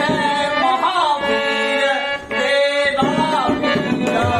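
A young man singing a Ramlila verse in long, wavering held notes, accompanied by tabla.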